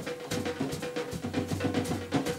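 Drum kit played in a fast, dense rhythm of drum and cymbal strokes.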